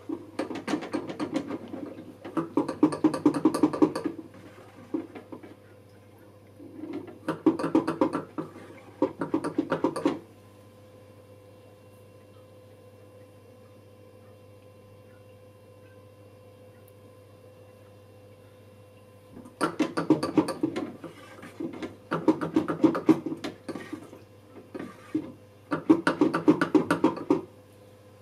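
Lomo 16mm developing tank being agitated in its stop bath by turning the top knob to rotate the film spiral: several bursts of rapid plastic clicking and rattling, a few seconds each, with a long pause in the middle. A faint steady hum runs underneath.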